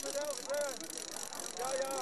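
Voices calling out in a run of short rising-and-falling shouts, over a steady background hiss.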